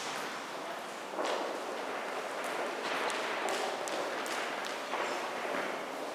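An audience applauding in a large hall, a continuous patter of many hand claps with scattered sharper claps and knocks.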